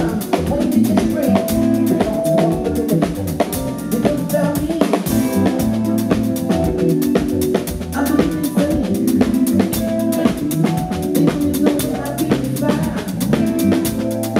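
A live band playing an upbeat groove: a drum kit keeps a busy, steady beat of kick, snare and cymbal hits over a bass line with guitar and keyboards.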